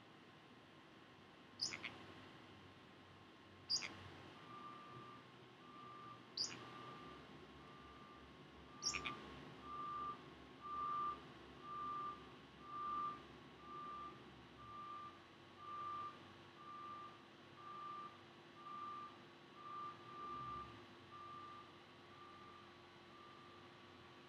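A Pacific parrotlet gives four sharp, high chirps, each falling in pitch, in the first nine seconds. Behind them a faint vehicle reversing alarm beeps steadily on one pitch, about once a second, from about four seconds in until near the end.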